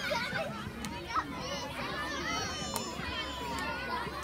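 Children's voices at play: several high-pitched voices calling and chattering at once, with no clear words.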